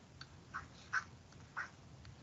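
Faint scratches of a stylus writing on a tablet screen, a few short strokes in quick succession as letters are written.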